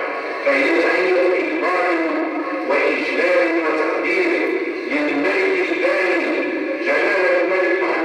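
A man's voice in a melodic, sung recitation, in long held phrases broken every second or two.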